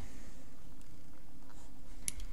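Faint handling noise on paper: a plastic set square is picked up and slid over the sheet, with a few light ticks over a steady background hiss.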